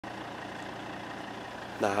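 A vehicle engine idling with a steady, even rumble. A man's voice starts near the end.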